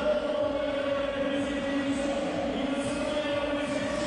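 A crowd of spectators chanting together on a steady, held pitch that runs without a break.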